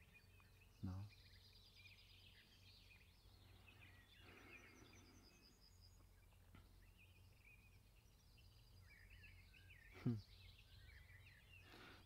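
Near silence with faint birdsong: scattered chirps and a short rapid trill about five seconds in.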